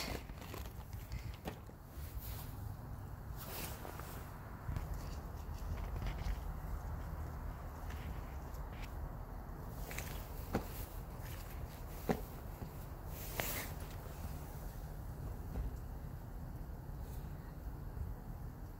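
Handling noise: a plastic zip-top bag crinkling and damp sphagnum moss being pulled out of a plastic cup. Scattered light clicks and crackles sit over a steady low rumble.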